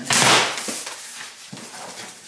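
Packing tape ripped off a cardboard shipping box in one quick tear lasting about half a second, followed by a couple of faint knocks as the cardboard is handled.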